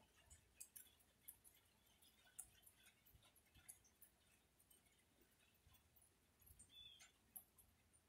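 Near silence with faint, scattered ticks of rain dripping, and a brief high chirp near the end.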